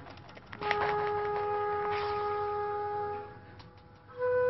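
A wind instrument holds one long steady note for about two and a half seconds, starting about half a second in after a few faint clicks. It is the closing music of the drama.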